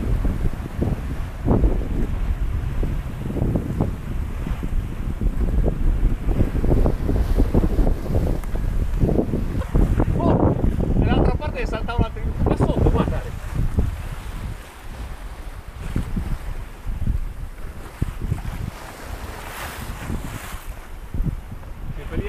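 Strong wind buffeting the microphone over the wash of waves along a sailboat's hull as it runs downwind in rough sea. The gusting is heavier in the first half and eases after about 14 seconds.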